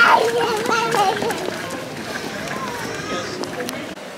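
A small child's high-pitched voice babbling and chattering for about the first second and a half, then a steady street background with faint voices.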